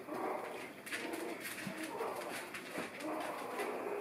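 Very young puppies whimpering in repeated short, high cooing cries, with a few light clicks among them.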